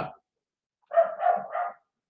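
A dog barking: three short barks in quick succession, about a second in.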